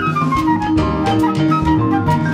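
Instrumental jazz band intro with drum kit and bass under a pitched lead instrument, which plays a run of falling notes in the first second.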